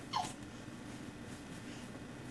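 A baby's brief high squeal, sliding down in pitch, just after the start, over a steady low background hum.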